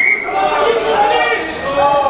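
A referee's whistle blast cutting off just after the start, then several voices shouting and calling over one another.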